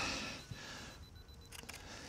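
A Canon R5 camera's shutter clicking faintly, a quick cluster of clicks about one and a half seconds in.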